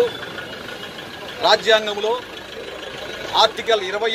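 A man speaking Telugu in two short phrases, about one and a half and three and a half seconds in, over steady street traffic noise with a vehicle engine idling.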